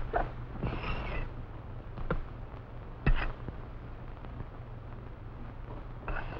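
Steady hum and hiss of an old film soundtrack, with a few scattered light clicks and knocks, the loudest about three seconds in.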